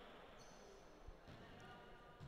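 Near silence: faint sports-hall room tone, with one faint click about a second in.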